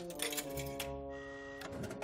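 A vending machine's keypad being pressed in a quick run of clicks, then the machine's mechanism running. Held background music chords sound underneath throughout.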